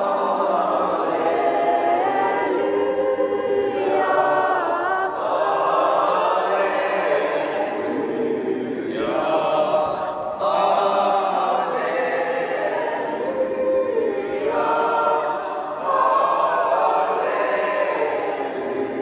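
Mixed choir of teenage students singing liturgical chant in a church, held notes moving in phrases with a brief break for breath about halfway through.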